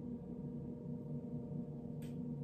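Steady low hum with a few steady overtones, wavering slightly: room tone.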